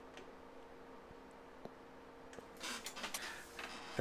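Faint handling noises, soft plastic rustles and clicks, as a water bottle and a handheld thermometer are moved away, over a steady low hum. There is one light click early on and a short cluster of rustling in the second half.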